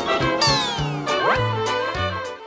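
Comic title-card jingle: music with a cartoon sound effect, a long falling pitch glide followed by a quick rising one.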